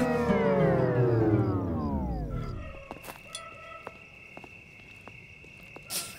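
Background film music winding down like a record or tape losing speed: the whole chord slides steadily lower and fades out over about two and a half seconds. After that comes a faint steady high tone with a few scattered ticks.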